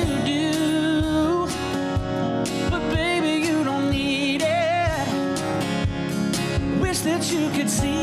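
Live acoustic country performance: a male lead singer sings with vibrato over keyboard and a steady percussion beat.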